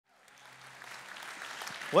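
Congregation applauding, faint and fading in from silence.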